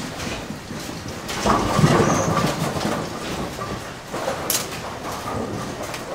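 Ten-pin bowling machine room ambience: pinsetter machinery on several lanes running with heavy mechanical clanking, rattling and rumbling. It swells loudest about one and a half to two and a half seconds in, with sharp clacks throughout.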